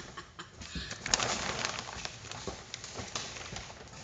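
Black plastic sheeting rustling and crinkling as it is brushed and pushed aside, an uneven crackly hiss that grows louder about a second in.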